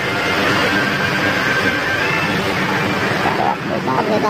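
Milling machine running in a machine shop, a steady mechanical noise with a thin high whine, and a voice briefly near the end.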